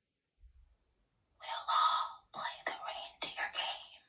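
About a second and a half of near silence, then a whispered, unpitched voice in short choppy stretches at the pace of speech.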